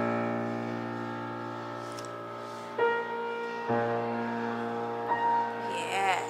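Piano chords played slowly by a beginner: a held chord rings and fades, then a new chord is struck about three seconds in and another a second later, each left to ring.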